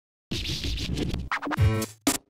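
Electronic intro music opening with a turntable-style record scratch, then short pitched stabs that drop in pitch and settle into a held low note, with a voice sample saying "Hey".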